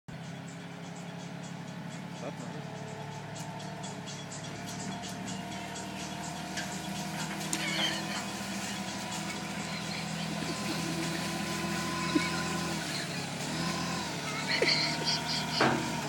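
Small diesel site dumper's engine running steadily, growing louder as the machine pushes through a dense hedge, with twigs and branches crackling against it.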